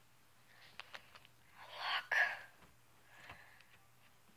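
Slime being stretched between fingers, with a few faint sticky clicks about a second in. A short breathy burst follows about two seconds in and is the loudest sound.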